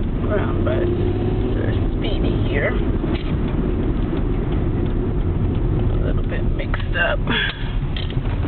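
Road and engine noise of a moving car heard from inside the cabin: a steady low rumble.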